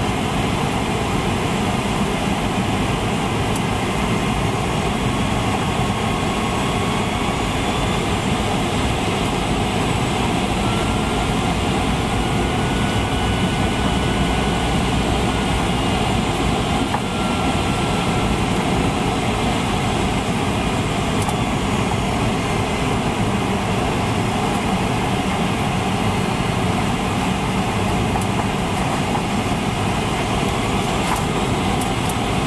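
Steady cabin noise of a Boeing 737 airliner on descent: the jet engines and the air rushing past the fuselage make an even, loud roar, with a faint whine that drifts slightly in pitch midway through.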